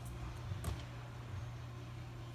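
Quiet room tone with a steady low hum and one faint, short knock about two-thirds of a second in.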